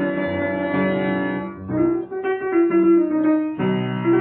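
Solo piano playing Persian classical music in the dastgah of Segah: a melody of ringing notes in the middle register over held lower notes. There is a short drop in loudness about halfway through before the line picks up again.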